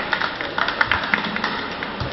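Steady background hiss of a hall picked up through a microphone, with a few faint taps.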